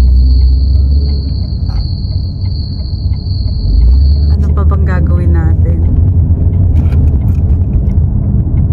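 Low road rumble inside the cabin of a moving car, with a steady high-pitched tone that runs for about the first four seconds and then cuts off.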